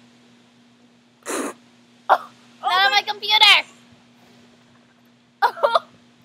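Teenage girls' wordless disgusted reactions to tasting pureed peas baby food: a sharp breathy burst about a second in, then high wavering groans, and short laughs near the end. A faint steady low hum runs underneath.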